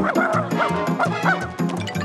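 Cartoon dog yipping and barking several times in short bending calls over upbeat background music with a steady beat.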